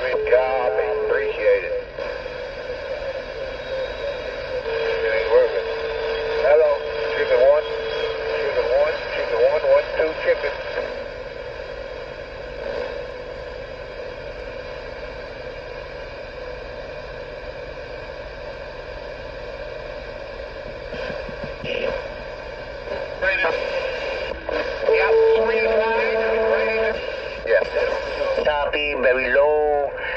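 CB radio receiver carrying weak, garbled voice transmissions that no words can be made out of, with steady whistling tones over static hiss. The signal is down in the noise level, the sign of a poorly working transmitting radio. The middle stretch is plain static.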